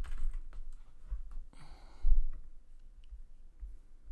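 Keystrokes on a computer keyboard, a few separate clicks. About halfway through comes a short rush of noise with a low thump, the loudest moment, followed by a few more sparse clicks.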